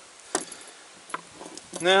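Two light metallic clicks as a metal screw clamp and brass hose fitting are handled, one about a third of a second in and another just past a second.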